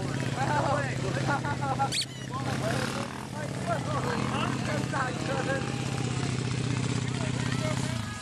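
A small minibike engine idles steadily, with people's voices talking over it.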